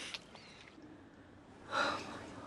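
A person's short, breathy gasp near the end, after a stretch of quiet.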